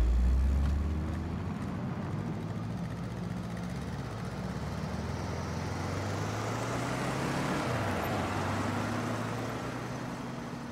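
Small hatchback car driving slowly over a cobbled street, its engine hum and tyre noise growing louder as it comes closer, loudest about eight seconds in, then easing off.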